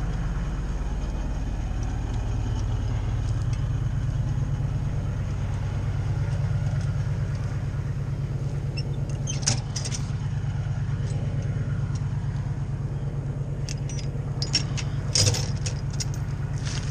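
Bucket truck's engine running steadily while the boom swings, a low hum throughout, with short sharp metallic clicks about nine and a half seconds in and again near the end.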